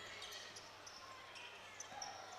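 Faint game ambience in a basketball gym: low crowd noise with a few brief, high squeaks of sneakers on the hardwood court.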